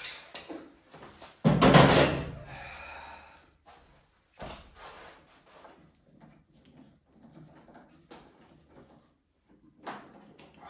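Steel F-clamps being undone and taken off a wooden slab on a workbench. A loud clunk comes about a second and a half in, a second sharper knock a few seconds later, then faint handling noises and a click near the end.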